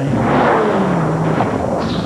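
A 2000 Kia Sportage SUV driving hard along a dirt forest trail: a loud rush of noise with a low rumble that starts suddenly and eases off a little toward the end.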